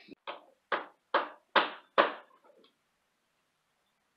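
Hammering on wood: five quick blows a little under half a second apart, each louder than the last.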